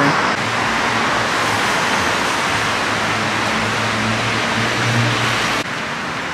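Steady city street traffic: cars driving along a busy avenue with a continuous rush of tyre and road noise and a low engine hum that swells about four to five seconds in. The sound cuts off suddenly near the end to a quieter hiss.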